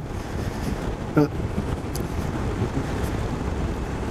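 Steady wind noise buffeting the microphone of a motorcycle riding at about 30 mph, with a low rumble underneath.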